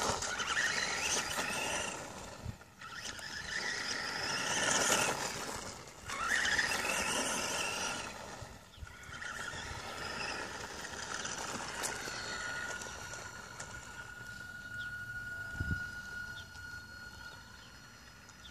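Electric motor of a Kyosho Sandmaster RC buggy whining, rising and falling in pitch as the throttle is worked. Its tyres grind over gravel and concrete. In the second half the whine settles to a steadier tone.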